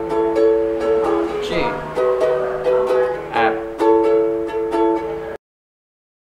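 Ukulele strummed in a steady down-and-up pattern, changing between G and F chords, with a short spoken chord name twice over the strumming. The sound cuts off abruptly to silence near the end.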